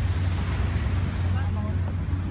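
Wind buffeting the microphone as a steady low rumble, over open beach ambience with faint distant voices.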